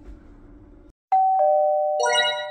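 A two-note descending ding-dong chime, a higher tone followed by a lower one, both ringing on and slowly fading. A brighter flourish of high chiming notes joins near the end.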